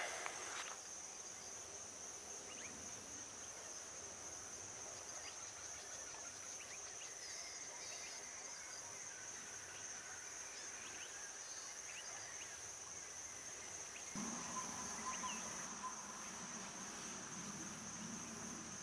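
Steady high-pitched insect drone, with scattered short bird chirps over it. There is a brief noise right at the start, and about 14 seconds in a lower, steadier sound with a faint tone joins.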